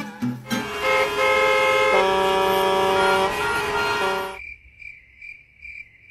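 A loud held chord of several steady notes, shifting pitch twice, that cuts off after about four seconds. It is followed by a quiet cricket-chirping sound effect: a high, thin chirp repeating about two to three times a second.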